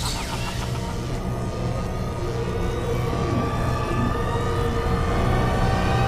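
Dark, tense soundtrack music with steady low held tones, building and growing louder toward the end.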